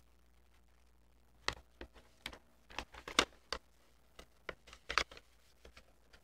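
Scissors snipping through printed paper in a series of short, quiet snips, starting about a second and a half in, with the loudest snip near the end.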